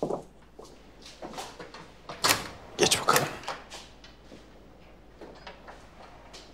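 A door being closed, with two sharp knocks about two and three seconds in, amid lighter clicks.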